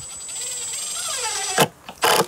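Cordless drill-driver running under load, driving a wood screw through a birdhouse's mounting board into a tree trunk. It makes a steady high motor whine whose lower tones drop in pitch as the screw bites. It ends with a sharp click about a second and a half in.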